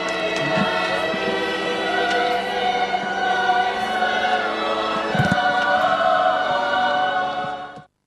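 A choir singing long held chords, with the sound fading out sharply just before the end.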